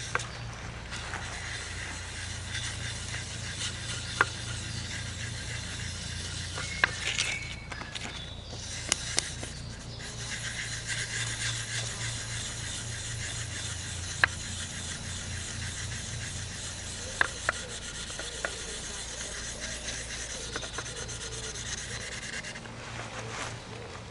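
Steel blade of an Opinel folding knife rubbed in small circles on 1200-grit wet-and-dry sandpaper on a wooden sharpening jig, honing the edge: a steady soft scratching that stops briefly twice, with a few light clicks.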